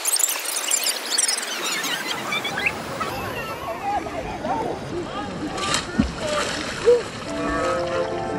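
Children shrieking and calling out as they play and splash in a shallow river pool, over the hiss of moving water. The voices are highest and busiest in the first couple of seconds. Background music comes in near the end.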